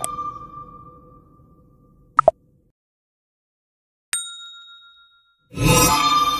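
Intro sound effects: a ringing chime fades away, a quick double click comes about two seconds in, a single bell-like ding rings about four seconds in and dies away over a second, and a loud, bright, sparkling chime starts near the end.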